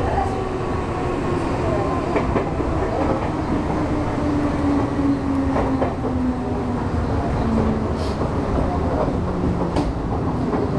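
Nankai 6300 series electric train running, heard from inside the front car: a steady rumble with a motor and gear whine that falls steadily in pitch as the train slows, and a few sharp clicks from the wheels over rail joints.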